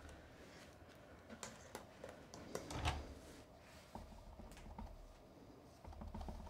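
Faint taps and clicks of a clear acrylic stamp block and an ink pad being handled on a wooden tabletop, with a soft knock a little under three seconds in.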